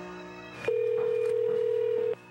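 Telephone ringback tone heard over a phone line: one steady, even tone of about a second and a half, starting about two-thirds of a second in, as the call rings before it is answered. Before it, a short musical chord plays.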